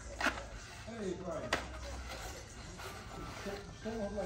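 Faint background voices with two sharp knocks, one just after the start and one about a second and a half in, over a low steady hum.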